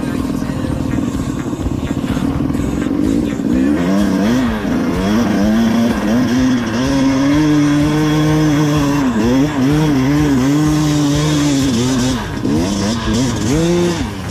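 Enduro dirt bike engine revving hard. The pitch swings up and down repeatedly with the throttle, holds steady for a couple of seconds in the middle, then wavers again near the end.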